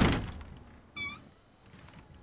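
A door thuds shut and its sound fades at the start. About a second in comes a single short cat meow.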